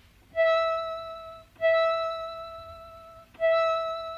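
Moog modular synthesizer playing three sustained notes at the same pitch, each starting sharply and fading away slowly. It is a violin-like test voice with delayed vibrato, patched so that a second envelope controller makes the vibrato start slow and get quicker during each note.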